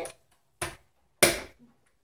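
Two sharp clicks about half a second apart as a Snap Circuits battery pack's snaps are pressed onto the plastic base grid; the second click is the louder.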